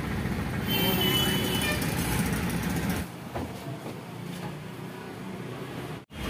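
Road traffic in a slow-moving jam heard from inside a small truck's cab, with a steady low engine rumble that drops away about halfway through.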